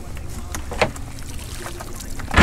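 Steady low rumble of wind and a boat on open water, with a few soft rustles and clicks as a monofilament cast net is shaken out by its horn.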